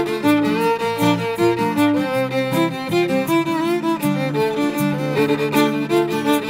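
A fiddle playing a quick Celtic instrumental melody, with guitar accompaniment beneath it.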